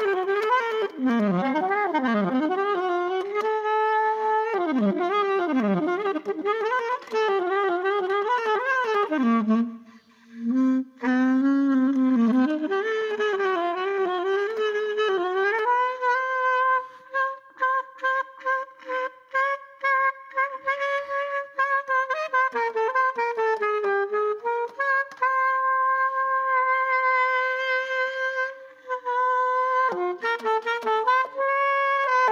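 Solo alto saxophone improvising freely: fast swooping pitch bends and glides, a brief break, a low note, then one mid-range note repeated in short stuttering stabs before settling into a long steady tone near the end.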